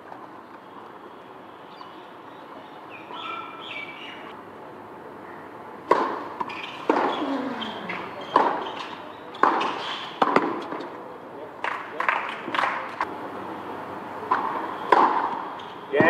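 Tennis ball struck back and forth by rackets in a rally, sharp hits about a second apart starting about six seconds in. Faint bird chirps before the rally.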